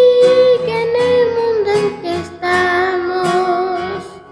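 A singer holding long sung notes, three or four in turn, stepping down in pitch and then back up, over acoustic guitar.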